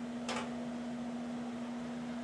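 A steady low hum, with one brief short noise a third of a second in.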